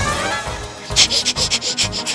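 A comic reaction sound effect: a whoosh, then from about a second in a fast shaker-like rattle of about eight short strokes a second.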